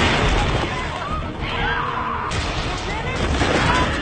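Disaster-film soundtrack of collapsing ground: a crash right at the start, then a continuous deep rumble, with people screaming in rising and falling cries about a second and a half in and again near the end.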